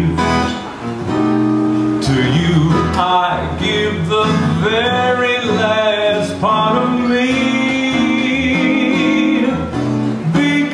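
A man singing with his own acoustic guitar accompaniment, performed live, holding a long wavering note near the end.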